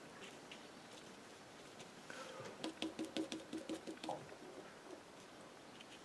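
Faint, rapid dabbing and scrubbing of a paintbrush, about five quick strokes a second, running for a second and a half midway through, with a few scattered light ticks.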